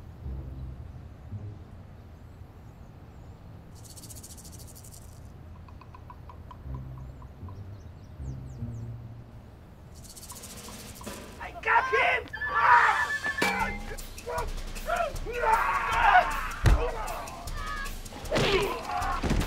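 Quiet outdoor ambience with a low rumble and two brief high-pitched chirring bursts, then loud dramatic film music swelling in about twelve seconds in.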